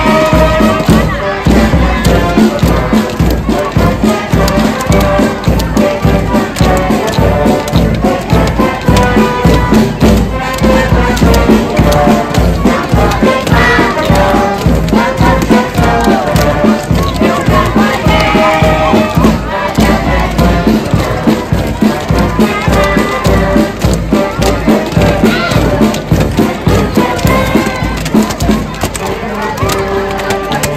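Live brass band of trombones, trumpets and sousaphone playing a festive march over a steady beat, with children's voices and crowd noise.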